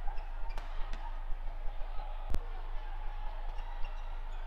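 Badminton rackets striking the shuttlecock during a fast doubles rally: a series of sharp, irregularly spaced cracks, the loudest about two and a half seconds in, over a steady hall hum.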